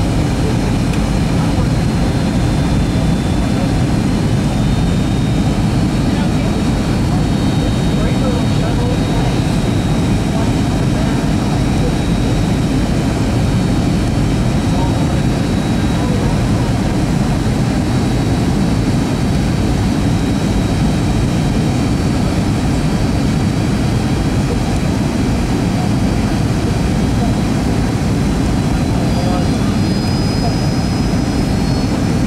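Steady cabin roar of a Boeing 757-200 descending on approach, heard from inside the cabin beside the wing, with the thin high whine of its Rolls-Royce RB211 turbofan engine drifting slightly in pitch over the low rumble.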